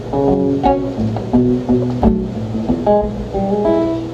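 Acoustic guitar playing a short, catchy repeating riff of picked notes over a bass line: the little groove the song was built on.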